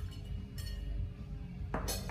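Metal barware clinking as a jigger is handled over a steel cocktail shaker: a light clink a little after half a second in and a sharper, louder one near the end.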